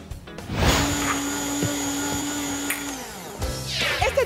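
Electric blender motor running with a steady hum and whir for a little over two seconds, starting about half a second in and cutting off suddenly about a second before the end.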